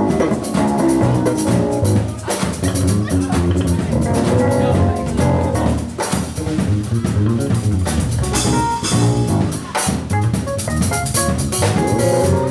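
Live gospel band jamming: two drum kits with busy cymbal work, electric bass, electric guitar and keyboard playing together at full volume.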